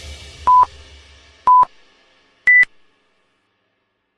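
Interval-timer countdown beeps: two short, lower beeps a second apart, then a higher-pitched final beep that signals the start of the next work interval. Background music fades out underneath.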